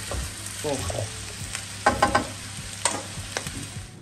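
Meat, potatoes and onions sizzling steadily in a non-stick frying pan, stirred with a wooden spatula. A few sharp knocks come around the middle.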